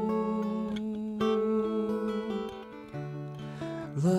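Acoustic guitar playing a song accompaniment on its own, with fresh chords struck about a second in and again near the end.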